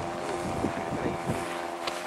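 Radio-controlled model Hayate (Nakajima Ki-84) warbird's motor running in flight as a steady drone, with wind on the microphone.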